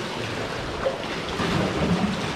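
Sea water surging and washing in a narrow rock gully, a steady rushing wash, with wind buffeting the microphone.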